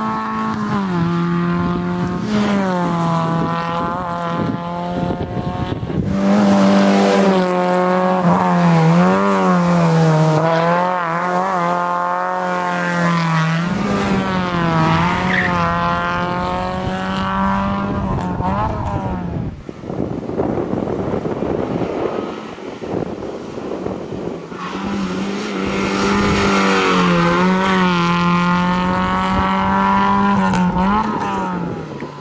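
Fiat Seicento rally car's small four-cylinder petrol engine driven hard through a twisty stage, its revs repeatedly climbing and dropping. It goes quieter for a few seconds about two-thirds in, then revs up strongly again near the end.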